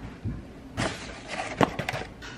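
All-purpose flour tipped from a measuring cup into a stainless steel mixing bowl: a soft rush of pouring flour about a second in, followed by a few light clicks near the end.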